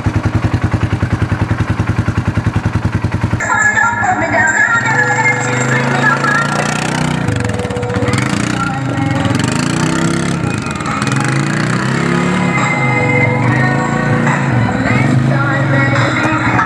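Polaris Sportsman 570's single-cylinder engine idling with an even pulse, then about three seconds in, pop music with singing starts playing from the quad's mounted Bluetooth speaker system, over the engine.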